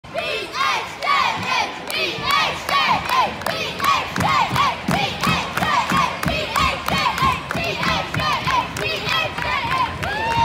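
Gymnasium crowd shouting and cheering, many voices rising and falling at once, with sharp hits mixed in throughout.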